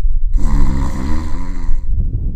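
A man's drawn-out, wordless vocal sound, wavering up and down in pitch for about a second and a half, over a steady low rumble of wind on the microphone.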